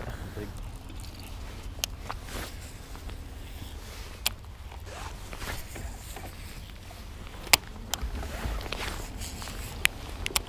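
Wind rumbling on the camera microphone, with a few sharp clicks and taps from handling of the gear. The loudest click comes about seven and a half seconds in.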